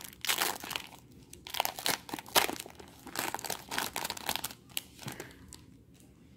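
Wrapper of a 2018 Topps baseball card hobby pack crinkling as it is torn open by hand and the cards are pulled out: a run of irregular crackles that dies away near the end.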